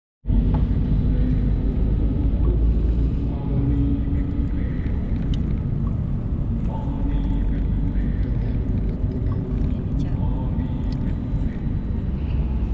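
Steady low rumble of a Mercedes-Benz car driving, road and engine noise heard from inside the cabin.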